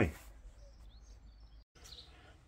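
Quiet background hiss with a few faint, high bird chirps in the first half. The sound cuts out completely for a moment near the end.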